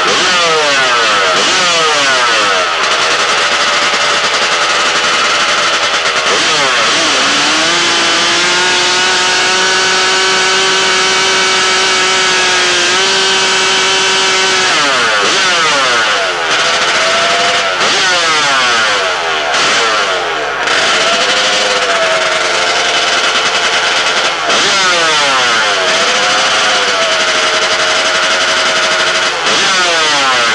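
Drag-racing motorcycle engine revving hard, held steady at high revs for about seven seconds near the middle as the rear tyre spins in a smoky burnout, with repeated sharp blips up and down before and after.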